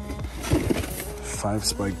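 A man's voice speaking briefly, likely counting, over faint background music. A couple of dull knocks come about half a second in, as cardboard game boxes are handled in a shopping cart.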